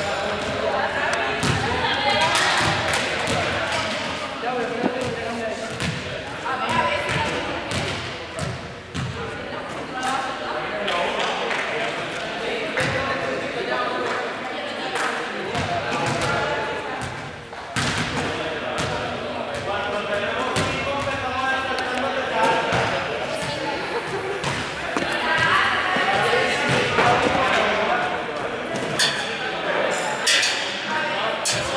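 Balls bouncing and being kicked on a sports hall floor, a scatter of sharp thuds at irregular intervals, over continuous overlapping chatter from a group of people.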